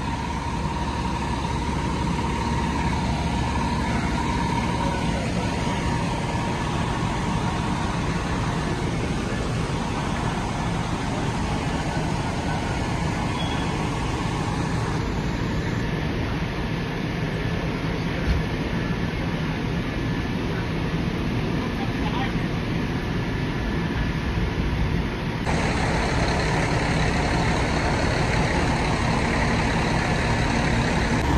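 Fire apparatus engines running, a continuous steady low drone. At first, water from an opened fire hydrant rushes along the street gutter.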